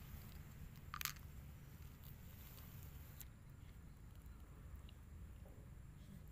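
A short crunch about a second in, from a small crunchy biscuit being bitten, then faint eating noises, all over a low steady background rumble.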